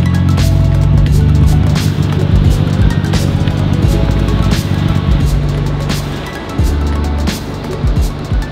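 Background music with deep bass and a steady drum beat, a hit about every second and a half.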